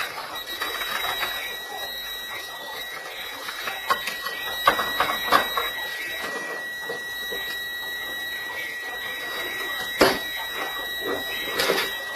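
A steady high-pitched electronic alarm tone comes on just after the start and holds without a break. Scattered knocks and bangs sound over it, the loudest about ten seconds in.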